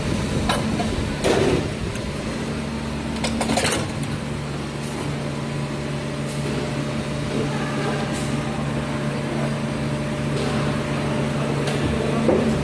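Injection molding machine running with a steady low hum, broken by a few brief knocks and rattles as the molded plastic basket is handled.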